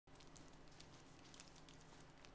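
Near silence: faint room tone with a few scattered faint ticks, the loudest about one and a half seconds in.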